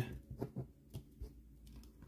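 Faint handling of trading cards: a few soft taps and rustles as a card is picked up off a pile on the table.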